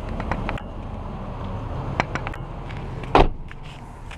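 A few light clicks and knocks over a steady low rumble, then one loud thump about three seconds in.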